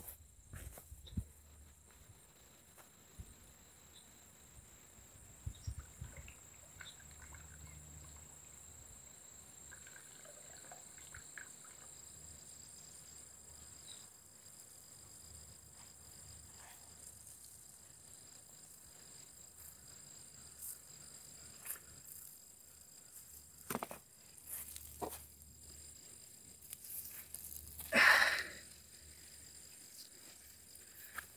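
Quiet outdoor ambience with a steady, faint, high-pitched insect drone. Scattered soft knocks and rustles, with a louder rustle about two seconds before the end.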